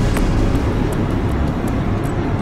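Steady airliner cabin drone.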